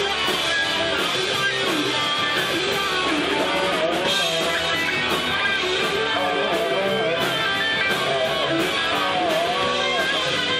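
Live rock band playing an instrumental passage: electric guitars with a lead line bending in pitch, over bass and drums with steady cymbal hits.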